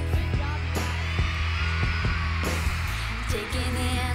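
Live pop-rock band music from a concert stage, with a steady drum beat and a heavy bass line.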